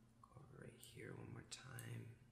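A man's voice murmuring quietly, too faint for words to be made out, over a low steady hum.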